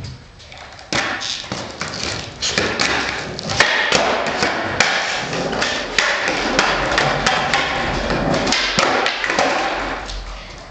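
Skateboard rolling over a concrete garage floor: a steady gritty wheel roll that starts about a second in, broken by frequent sharp clacks and thuds of the board.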